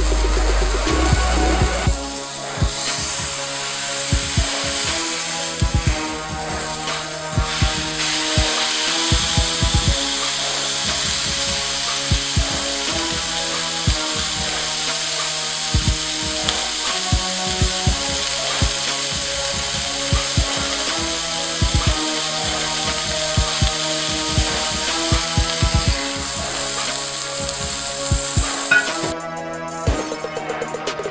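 Background music with a steady drum beat, over the sizzle of a ground-beef patty frying in a hot cast-iron skillet as it is pressed flat.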